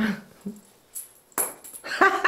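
Small plastic toy maraca rattling in a few short shakes as a capuchin monkey handles and throws it, with a sharp rattling clatter about one and a half seconds in. A brief short sound, not speech, comes at the very start.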